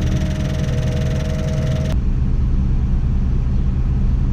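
Tadano all-terrain crane's engine running steadily, a low drone heard from inside the operator's cab. Over it a higher whine with a hiss runs until about two seconds in, then cuts off suddenly.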